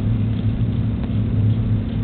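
Steady low hum under a constant hiss, unchanging throughout.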